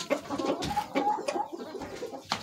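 Rooster making soft, wavering low clucking calls while pecking at the floor, with a few light taps.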